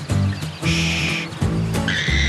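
Cartoon background music, with a short comic nature sound effect of an animal call from about half a second to a second and a half in.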